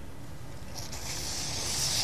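Sargent Steam vapor steam cleaner's detail tool hissing as it jets steam onto a dirty tennis shoe, the hiss starting just under a second in and building.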